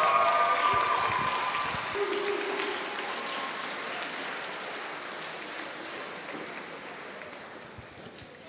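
Audience applause, loudest at the start and gradually dying away.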